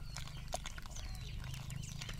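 Wooden stick stirring thick pearl-millet porridge in a metal pot, with scattered small clicks, while birds call in the background.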